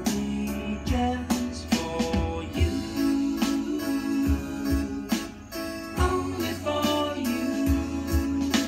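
Music with a steady beat, about one stroke a second, under sustained pitched notes.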